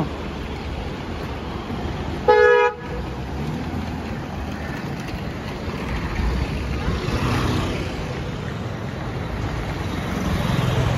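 One short vehicle horn honk, about half a second long, a little over two seconds in, over steady street traffic. The traffic noise swells as a car passes close by around the middle.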